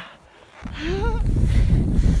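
After a brief hush, a loud low rush of wind on the microphone and a snowboard sliding through deep powder starts about half a second in. A short rising yell from the rider cuts through it.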